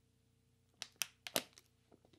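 A plastic water bottle being handled after a drink: a handful of sharp clicks and crackles, about one to two seconds in, against a quiet room.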